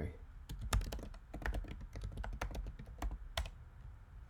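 Typing on a computer keyboard: a quick, uneven run of key clicks lasting about three seconds as a short command is typed.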